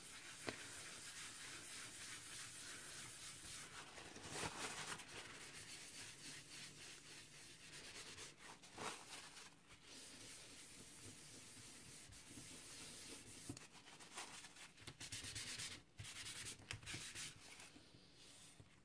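Paper towel rubbing over a card tag, buffing off the excess Distress Micro Glaze wax: a faint scrubbing that swells and eases in spells.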